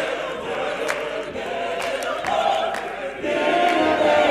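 Opera chorus singing together, many voices in close harmony, with a few sharp clicks scattered through it; the singing grows louder with held notes near the end.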